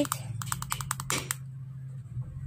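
The fire button of a VapX Geyser 100W vape mod being pressed in a quick run of sharp clicks lasting about a second. It is the five-click sequence that switches the mod on.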